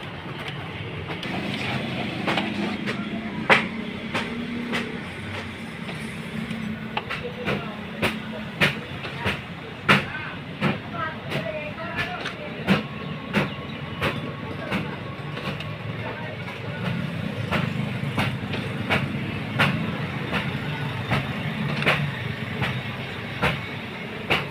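HP LaserJet Pro 400 laser printer running its cleaning cycle: a steady motor hum with sharp clicks and clacks from the paper-feed mechanism, coming irregularly about once or twice a second.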